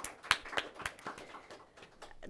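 A few people applauding: scattered hand claps at an uneven pace, thinning out near the end.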